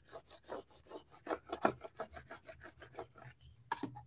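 Plastic card squeegee scraped quickly back and forth over transfer tape on cut vinyl lettering, several short rubbing strokes a second, stopping shortly before the end. It is burnishing the transfer tape so that it grabs the vinyl letters.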